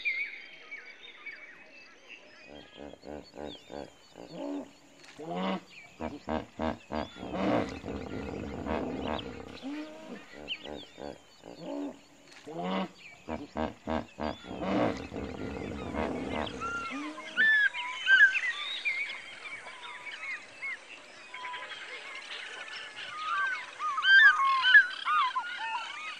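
Hippos calling: two long runs of deep, rapidly pulsed honking grunts, one after the other. After the second run, birds call with many quick chirps.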